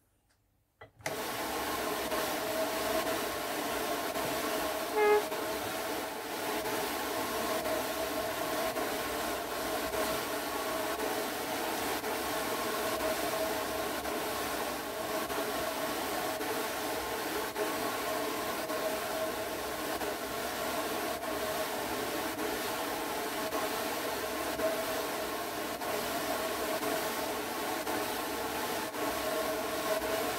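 Drum carder running, its large drum turning at a steady speed, with an even whirring hum that starts abruptly about a second in. A short squeak comes about five seconds in.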